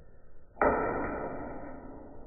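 A single strike of a flint-and-steel striker against the sharp edge of a small chert flake: one sharp clack about half a second in, then the steel rings with a few clear tones that die away over about a second.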